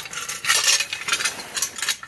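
A quick run of light metallic clinks and rattles from the small metal clips just pulled off the motorcycle's exhaust cover being handled.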